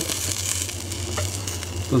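Meat sizzling on the grate of a small charcoal grill, a steady hiss with a few faint ticks.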